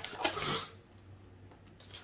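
Tarot cards being shuffled by hand: a quick run of light card clicks and flicks that stops less than a second in, leaving quiet room tone.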